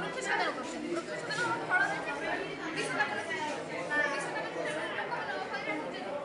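Chatter of many people talking at once, overlapping voices filling a large room.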